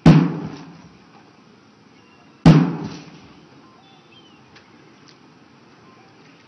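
Two sharp, loud thuds about two and a half seconds apart, each with a short echoing tail.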